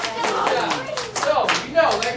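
Schoolchildren clapping their hands in a classroom: uneven, scattered claps, with children's voices over them near the end.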